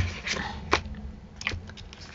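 A few small clicks and crackles of paper and a plastic sheet being handled on a craft table, spread out over the two seconds.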